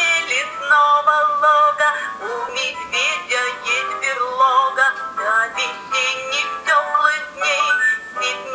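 Children's song playing from the sound module of a musical board book: a singing voice over a light electronic accompaniment, thin-sounding with almost no bass.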